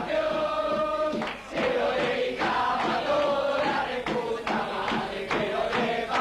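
A group of men chanting and singing together in a rowdy celebration.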